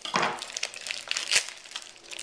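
Packaging around a whole raw chicken crinkling and crackling as it is handled to be opened, with irregular sharp crackles, the sharpest a little over a second in.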